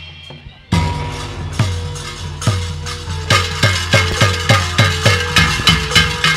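Live percussion-led music of a sandiwara theatre ensemble starting abruptly about a second in: heavy drum strokes about once a second, quickening to about three a second partway through, over held notes.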